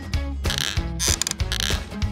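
Background music with a steady beat, overlaid with a rattling run of rapid clicks from an added sound effect.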